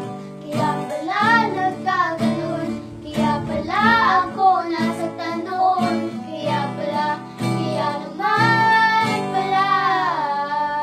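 Two young girls singing a song together, with a strummed acoustic guitar accompanying them.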